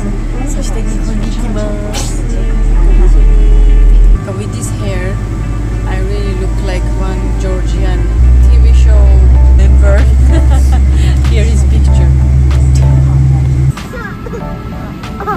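Background music with deep held bass notes that change pitch about every four seconds, cutting off abruptly just before the end, with a voice over it.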